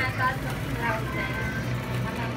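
Indistinct background voices over a steady low hum from a hot-drink dispenser pouring a chocolate drink into a paper cup.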